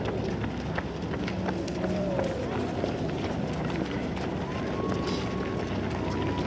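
Footfalls of a pack of runners in running shoes on asphalt, a steady patter of many overlapping steps, with faint voices in the background.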